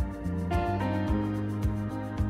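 Background music with a steady beat, about two beats a second, and held chords that change every half second or so.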